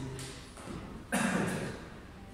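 A single short, loud burst of noise about a second in from people doing burpees as they drop from the jump down to the floor mats.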